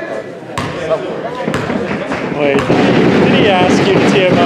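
A basketball bouncing twice on a gym's wooden floor about a second apart, with a crowd's voices echoing in the gym that grow louder about two and a half seconds in.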